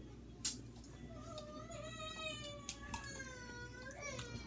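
A long, drawn-out, high-pitched cry that wavers slowly in pitch, starting about a second in and still going at the end, with a sharp click just before it.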